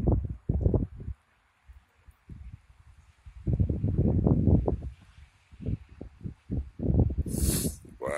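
Wind buffeting a phone's microphone outdoors, in irregular low, muffled gusts, the longest about halfway through. A brief, brighter scratchy rustle comes near the end.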